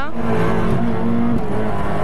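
Fiat 600 Kit rally car's engine heard from inside the cabin, pulling at steady revs with a brief dip about one and a half seconds in.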